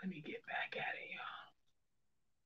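A woman speaking softly under her breath, close to a whisper, for about a second and a half, then quiet.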